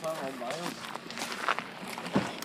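Footsteps on a gravel lot: a few separate steps in the second half, with a short bit of voice near the start.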